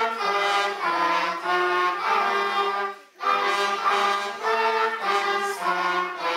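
Small brass ensemble of children and an adult, on trumpets, baritone horns and trombone, playing a slow tune in sustained chords. The chords change every half second or so, with a short break between phrases about three seconds in.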